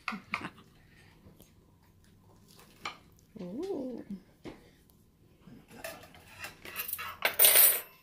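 Kitchen knife cutting a pumpkin pie in a glass pie dish: scattered clicks and taps of the blade against the glass, then a harsh scrape near the end as a slice is levered out on the knife. A brief voice-like sound that rises and falls comes about halfway.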